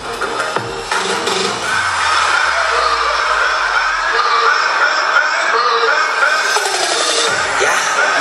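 Recorded music for a stage dance routine, played loud over a hall sound system. It is a bass-heavy electronic track whose deep bass drops out about two seconds in, leaving a wavering higher melodic line.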